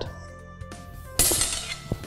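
Background music, with a short, bright metallic clash of steel sword blades meeting about a second in that rings briefly and fades.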